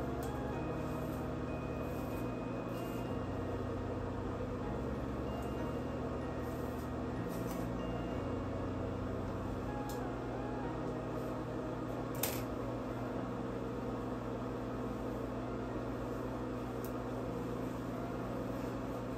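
Quiet background music with slowly changing bass notes over a steady hum, and one faint click about twelve seconds in.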